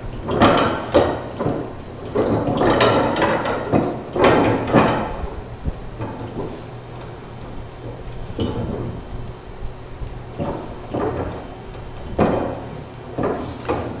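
Mini tubing cutter being turned around a copper water pipe: short, irregular scraping strokes of the cutting wheel and clicks of the tool on the pipe, with brief pauses between turns while the feed wheel is tightened. The strokes are louder in the first few seconds.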